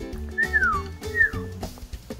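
A male Montezuma quail giving two falling whistles, the second shorter than the first, over background music.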